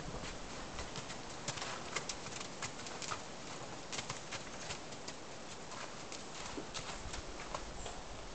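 Horses' hooves stepping on snowy ground: soft, irregular crunches and clicks.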